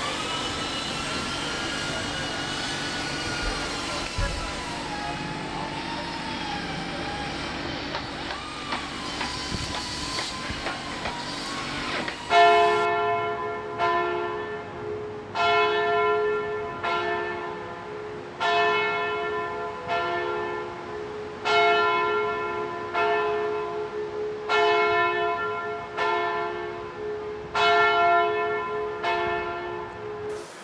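Church bells ringing: from about twelve seconds in, the bells are struck roughly every second and a half, several pitches sounding together, each strike ringing on into the next over a steady hum. Before the bells there is only a steady background noise.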